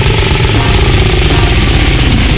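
Goregrind track in a blast-beat passage: programmed drums hit very fast and evenly under heavily distorted guitar and bass.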